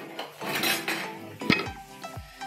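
A ceramic plate being handled on a stone countertop: a soft scrape, then one sharp clink about one and a half seconds in.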